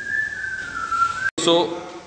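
A person whistling one held note that slides down in pitch near the end and cuts off suddenly about a second and a half in.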